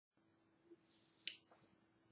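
A faint, short hiss with a single sharp click about a second and a quarter in.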